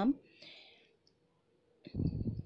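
Hands handling mangoes on a plate: after a short word, a faint hiss and near silence, then a soft click near the end.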